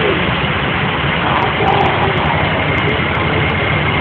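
Heavy vehicle engine running steadily at idle, a continuous low rumble under dense street noise.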